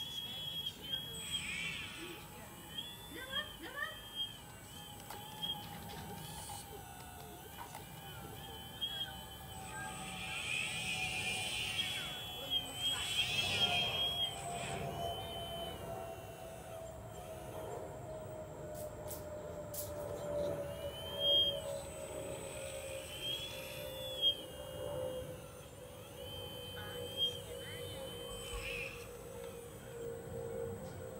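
RC model excavator's small electric drive motors whining in short spells as the boom, arm and bucket move through the dirt, with a few light clicks. Under it a faint steady tone falls slowly in pitch throughout.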